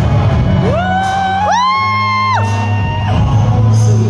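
Loud music playing over the hall's speakers with a strong steady bass, and audience members shouting long drawn-out calls, two voices overlapping, each rising and held for a second or two.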